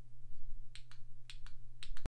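Five short, sharp clicks within about a second, roughly in pairs: a hand handling the phone or camera that is recording.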